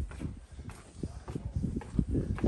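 Hiking-boot footsteps on stone steps and stone paving, hard knocking steps at about two a second.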